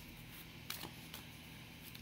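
Oracle cards being handled as a card is drawn from a deck: a handful of faint, sharp clicks and taps of card stock.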